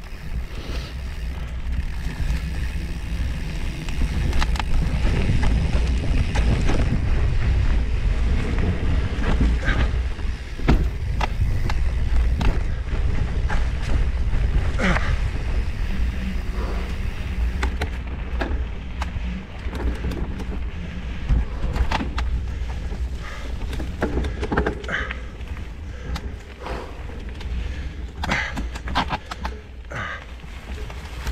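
Steady wind rumble on the microphone of a camera moving along a forest trail. Over it come irregular crackles and snaps as dry leaves and twigs on the path are run over.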